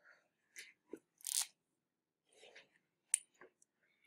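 A quiet pause in a classroom, broken by a few faint, scattered rustles and soft clicks, a brief low murmur, and one sharp click about three seconds in.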